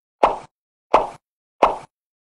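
Three short plop sound effects, evenly spaced about 0.7 seconds apart, each dying away quickly, from an animated end-screen graphic.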